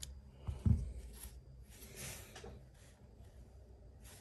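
Small handling sounds of folding-knife handle parts and a small screwdriver: a sharp click at the start, a dull knock a little under a second in, then faint rubbing and scraping.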